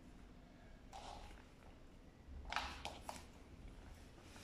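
Faint rustling and a few quick soft taps a little past the middle, from small cardboard coding cards being picked up and handled on a puzzle play mat.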